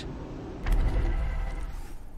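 A low mechanical rumble with a faint whir, starting about two-thirds of a second in and slowly fading.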